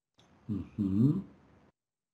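A woman's wordless moan in two short parts, its pitch dipping and then rising.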